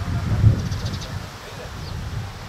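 Wind buffeting an outdoor microphone, a low rumble that swells in a gust about half a second in, with faint distant voices across the field.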